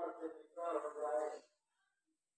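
A person's voice in two short stretches, cut off abruptly to dead silence about a second and a half in.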